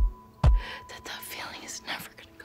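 Two deep, heavy thumps of a slow beat in the soundtrack about half a second apart, after which the beat stops. A woman's breathy, tearful whisper-like sound follows, with her voice wavering.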